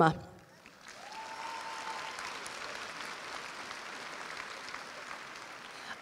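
Audience applause that starts about a second in and holds steady, with one held high call rising over it near the start.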